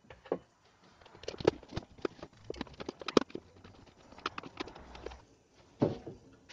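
Irregular sharp clicks and knocks of a plastic distribution-board cover being fitted back on and snapped into place.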